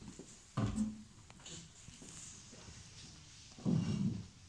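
Handling noise as a classical guitar is picked up and its player sits down with it: a dull thump about half a second in and another near the end, with faint rustling between.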